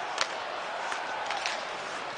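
Steady crowd noise in a hockey arena during live play, with a sharp click of stick on puck about a quarter-second in and a fainter one about a second in.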